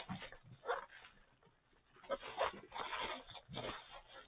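Bubble wrap rustling and crinkling as gloved hands handle it, in irregular bursts, busiest in the second half.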